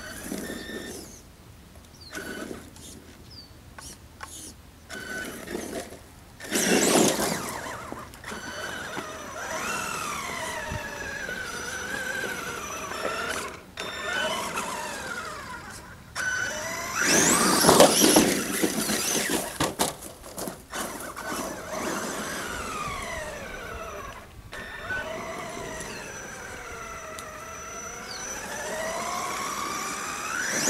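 Electric motor of a Traxxas E-Revo RC truck whining, its pitch rising and falling again and again as the throttle is worked on a climb. Two loud bursts of noise break in, about seven and seventeen seconds in.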